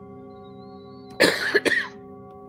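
A person coughing about a second in: one harsh cough followed by two short ones, over steady ambient background music.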